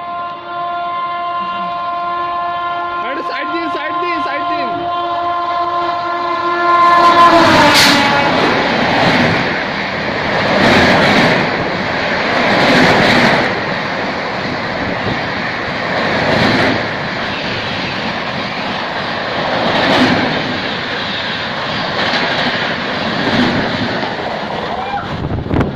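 A WAP-7 electric locomotive's horn sounds one long, steady blast as the express approaches, dropping in pitch about seven to eight seconds in as the locomotive passes. Then comes the loud rush and wheel clatter of the coaches running through at speed, swelling every couple of seconds.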